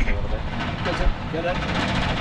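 A man's voice speaking in short, partly heard phrases over a steady background rumble.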